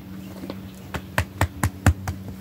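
A hand patting a pygmy goat's back and side: five quick pats at about four a second, the last the loudest.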